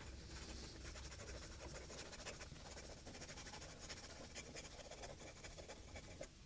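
Gravitas Quark aluminium fountain pen with a broad #6 nib scribbling fast on a Rhodia pad: a faint, continuous scratching of quick strokes. The nib writes without skipping, its ink flow keeping up with the speed.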